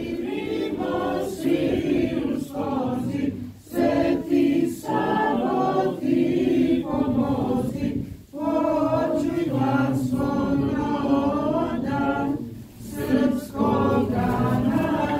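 A group of voices singing an unaccompanied Orthodox church hymn together, in phrases broken by short pauses for breath.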